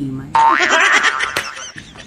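A toddler's loud squeal, starting abruptly about a third of a second in and lasting just over a second.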